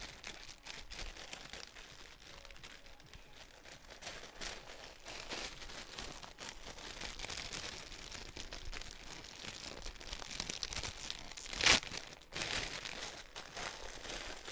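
A clear plastic bag crinkling and rustling as a folded clothing set is stuffed into it and pressed down, with one louder crackle near the end.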